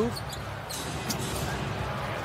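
Basketball arena crowd noise under a live game, with a few short sharp sounds from the ball and shoes on the hardwood court.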